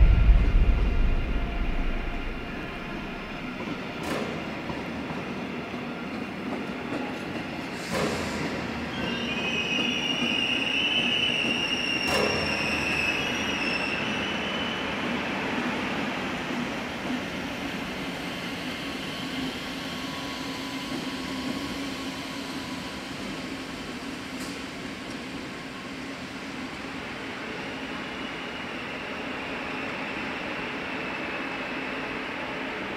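A passenger train running into the station, heard from inside the carriage: a steady rumble with a few sharp clicks, and the wheels squealing high for several seconds about ten seconds in. A deep boom opens the sound.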